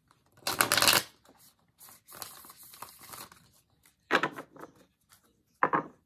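A deck of tarot cards being shuffled by hand. There is a loud burst of card noise about half a second in, softer shuffling through the middle, and two short bursts near the end.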